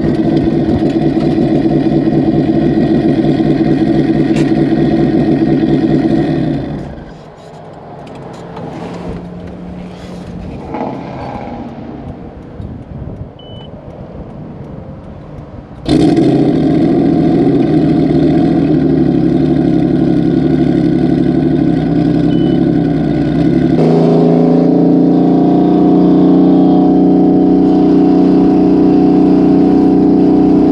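Turbocharged Subaru's engine heard from inside the cabin while driving, holding a steady pitch. It drops away sharply after about six seconds to a much quieter stretch, comes back suddenly loud about halfway through, and steps up again a few seconds later.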